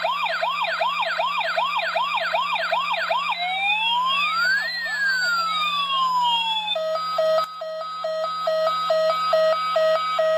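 Toy police car's electronic siren cycling through its patterns. First comes a fast yelp of about four rising sweeps a second, then a slower up-and-down wail for about three seconds, then from about seven seconds in a pulsed beeping of about two beeps a second.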